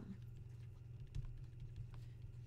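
Faint taps and scratches of a stylus writing on a tablet screen, with a small thump a little past the middle, over a steady low hum.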